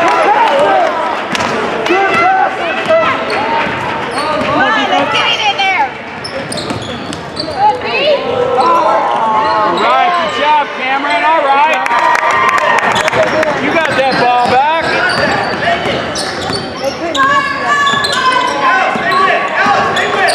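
A basketball bouncing and being dribbled on a hardwood gym court, with players' and spectators' voices calling out throughout.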